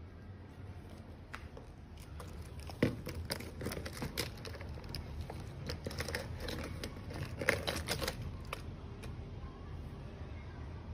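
Handling noise: a run of small plastic clicks, taps and rustles as the scooter alarm's siren unit and two remote key fobs are moved about and set down on the battery pack, busiest from about three to eight seconds in, with the sharpest taps near three and seven and a half seconds.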